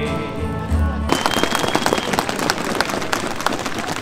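A held note of music over loudspeakers ends about a second in, and the crowd breaks into applause, a dense patter of clapping that carries on.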